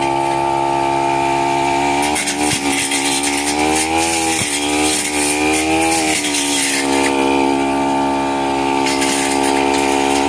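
A backpack brush cutter's engine running at high speed. Its pitch dips about three times as the cutting head bogs down in the undergrowth, then picks back up. A constant rattle and ticking of grass and twigs strikes the spinning head.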